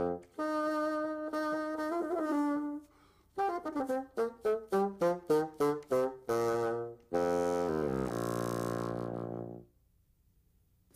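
Solo bassoon playing. It holds one long note, pauses briefly, and plays a run of short detached notes. It then steps down in pitch into a long low sustained note that stops just before the end.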